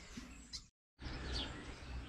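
Quiet outdoor background with a couple of faint bird chirps, broken a little under a second in by a short gap of dead silence where the recording is cut.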